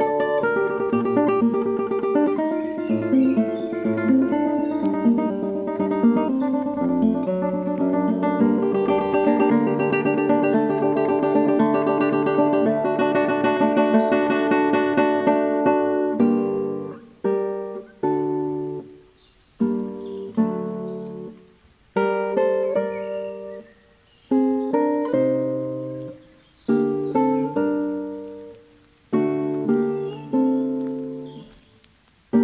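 Background music on a plucked guitar: busy, continuous picked notes, then from about halfway single chords struck one at a time and left to ring out and fade before the next.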